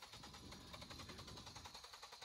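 Near silence with a faint, rapid, even ticking, about ten clicks a second.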